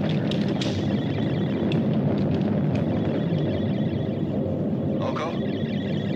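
Steady low rumble of a film spaceship sound effect, with a faint thin high tone above it and a few light clicks in the first second.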